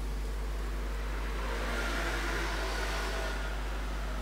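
Steady background noise with a constant low hum, and a faint swell of hiss that rises and fades in the middle.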